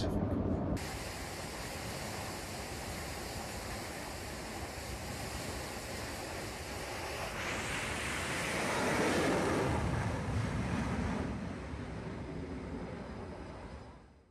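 Aircraft-carrier flight-deck noise: steady wind and machinery hiss. It swells louder for a few seconds from about seven and a half seconds in, then eases off.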